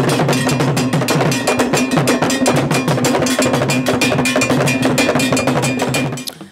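Traditional Ghanaian drumming for the dance: a dense, fast pattern of drum strokes with a metal bell ringing steadily through it.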